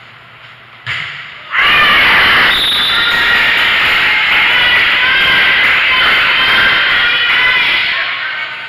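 Volleyball thuds about a second in, then loud cheering and yelling from many voices at once, which holds at a high level.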